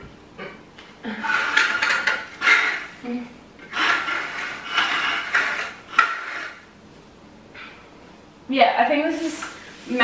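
An artificial Christmas tree being put together: its metal trunk and wire branches clink and scrape against the stand, with rustling of the plastic needles, in a few irregular bursts.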